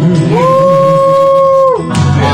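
A woman singing karaoke through a microphone over the backing track, holding one long, steady note for about a second and a half, then stopping.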